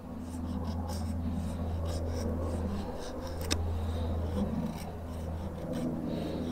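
A small fixed-blade knife (FoxEdge Atrax, 8 cm 9Cr13 steel blade) shaving curls off a wooden stick to make a feather stick: a run of short, uneven scraping strokes, with one sharp click about three and a half seconds in.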